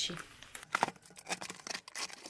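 Packaging being handled on a table: plastic wrapping crinkles, with a few light clicks and knocks as a cardboard parcel is moved into place.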